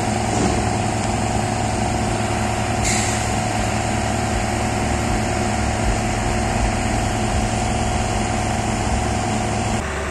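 An engine running steadily with a constant hum. About three seconds in, a high hiss joins it, and the sound changes abruptly just before the end.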